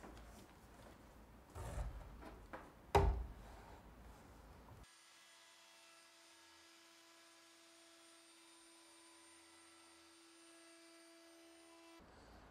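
Handling knocks as a router is set on a hardwood slab: a soft thud about two seconds in and a sharp knock about three seconds in. The sound then cuts to near silence with only a faint steady hum.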